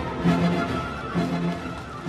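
Orchestral background music: a short held low note repeating about once a second.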